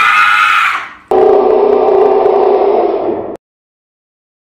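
A woman's high-pitched, held scream, about a second long, the second of two in a row. A lower, steady, loud sound of about two seconds follows and cuts off abruptly.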